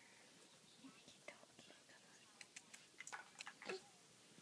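Near-silent room with a few faint sharp clicks in the second half and a brief soft voice-like sound, like a whisper or small murmur, near the end.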